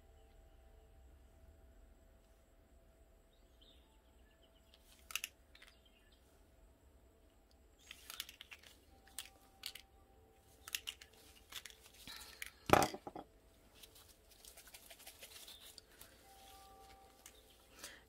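Faint handling noises from a nitrile-gloved hand squeezing a plastic alcohol-ink dropper bottle: scattered small clicks and crinkles, with one sharp click about two-thirds of the way through.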